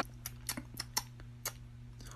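Faint, irregular sharp clicks, about seven in the first second and a half, over a low steady hum.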